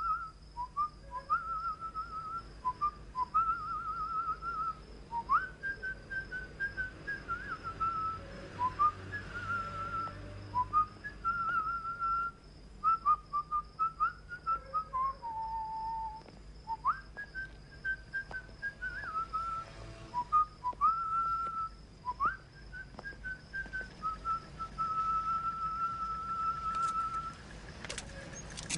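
A person whistling a slow tune of short notes, several of them scooping up into the pitch. The tune ends on a long held note near the end.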